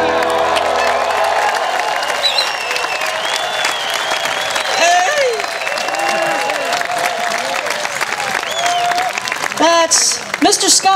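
Audience applauding and cheering right after a song ends, with whistles and shouts over the clapping.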